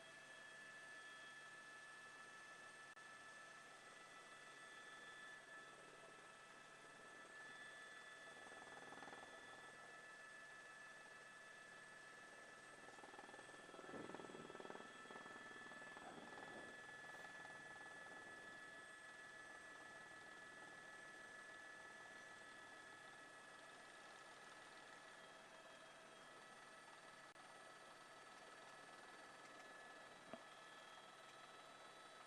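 Near silence: a faint, steady electronic hum of several held tones with light hiss.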